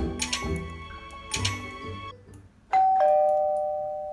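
Background music fades out, then about three quarters of the way in a two-note doorbell chime sounds, a higher note followed by a lower one, both ringing on as they fade: someone is at the door.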